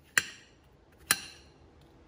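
Kitchen knife cutting watermelon pieces and striking the plate beneath twice, about a second apart, each strike a sharp clink with a brief ring.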